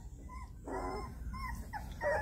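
Young puppies whimpering: a few short, high squeaks and one longer whine about a second in.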